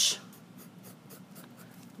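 Pen writing on paper: a run of faint, quick scratching strokes.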